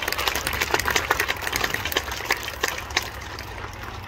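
Applause from a small audience: many separate hand claps in an irregular patter.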